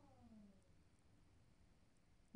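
Near silence: faint room tone, with one faint call falling in pitch that fades within the first second.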